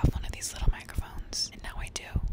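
A woman whispering close into a small handheld microphone, breathy with sharp hissing on the s-sounds.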